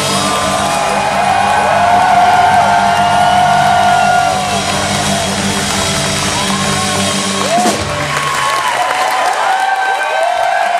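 A rock band holding its final chord, guitars and cymbals ringing out, while people cheer and whoop over it; the chord stops about three quarters of the way through, leaving the cheering and whoops.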